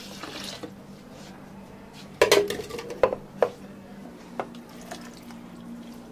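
Milk pouring into a clear plastic blender cup, trailing off within the first second. Then a loud clatter about two seconds in and several lighter knocks as watermelon chunks go into the second plastic blender cup.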